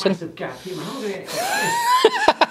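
A man's effort noises as he squeezes through a narrow window opening in a stone wall: low wordless vocalising and breath, then a strained groan rising in pitch near the end.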